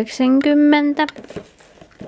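A woman's voice briefly saying a price in Finnish, then faint clicks and rustling as a cardboard box is set down among packaged items on a table.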